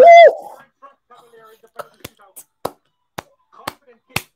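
A short loud cry, then hand claps: six sharp single claps at uneven spacing through the second half.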